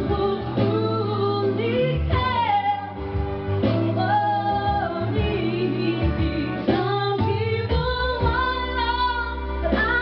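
A woman singing a slow soul ballad live into a microphone over a karaoke backing track, holding long notes with vibrato.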